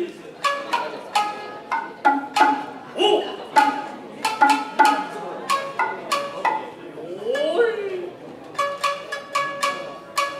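Kotsuzumi shoulder drum and shamisen trading phrases in a call-and-response passage of nagauta music: sharp shamisen plucks and drum strikes, with two long sliding vocal calls from the performers, one about three seconds in and one near eight seconds.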